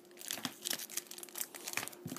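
Foil trading-card pack wrappers crinkling as they are handled, a run of small irregular crackles.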